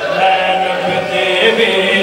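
Men's voices chanting long, held, slowly wavering notes in a zakir's sung Punjabi recitation, a second man joining on a handheld microphone.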